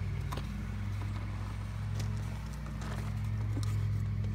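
Bobcat S650 skid-steer's diesel engine idling steadily, with a few light clicks as the fuel cap is handled.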